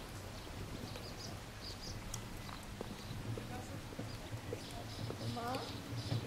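Outdoor ambience: faint voices of people, clearest near the end, over a steady low hum, with scattered light clicks and taps.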